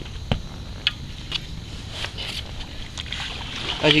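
Handling noise from a small bull shark in a landing net: one sharp knock about a third of a second in, then a few softer clicks and rustles over a steady background hiss.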